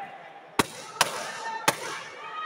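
Three sharp smacks from taekwondo sparring, spread across about a second, each with a short echo from the hall.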